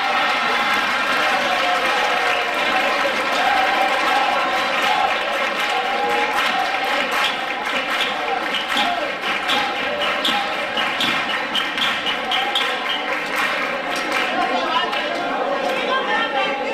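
Several performers' voices going at once, loud and continuous, echoing in a large hall.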